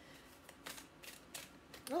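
Hands shuffling a deck of oracle cards: about five short, papery swishes and snaps over two seconds.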